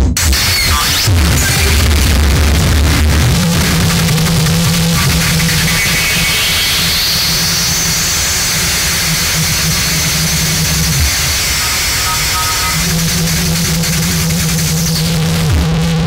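Electronic music: a dense, noisy synthesizer texture over a held low synth note, with a hiss that sweeps up in pitch and back down through the middle of the passage.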